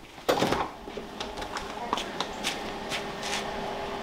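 A door being opened to step outside: a loud knock-and-swing sound about a third of a second in, then a few short clicks and knocks over a steady low hum.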